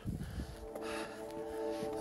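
Ambient background music fading in, with long held chords entering a little under a second in and swelling. It plays over low, uneven wind noise on the microphone.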